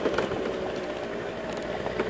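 A steady, low engine hum.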